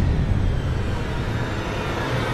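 Low, steady rumbling drone of cinematic movie-trailer sound design, left ringing after a heavy hit.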